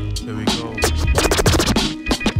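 Hip hop instrumental with turntable scratching over the beat and bass line, the scratches coming thick and fast in the second half.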